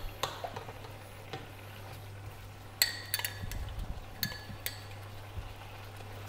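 A spoon scraping picada out of a glazed mortar and knocking against it, giving several sharp clinks with a short ring, most of them about three and four seconds in. A steady low hum runs underneath.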